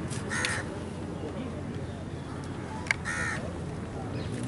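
A crow cawing twice, the calls about two and a half seconds apart, each short and raspy.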